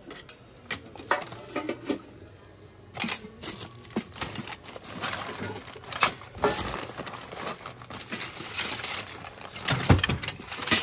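Metal cookie cutters and small tins clinking against each other, with plastic bags crinkling, as a hand sorts through a basket of them: an irregular run of small clinks and rustles, the loudest clink near the end.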